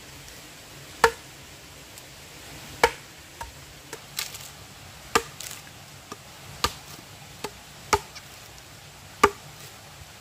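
A metal blade chopping into a split log to hollow it out for a trough. The chops are sharp and irregular, about one a second.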